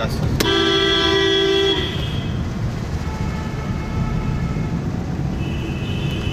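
A car horn gives one steady blast of about a second and a half, over the low rumble of road and engine noise heard inside a moving car. A fainter, higher-pitched horn toots briefly near the end.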